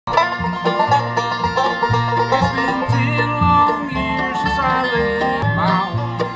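Bluegrass band playing an instrumental intro on banjo, fiddle, mandolin, resonator guitar (dobro), acoustic guitar and upright bass, with a steady bass beat underneath and sliding notes near the end.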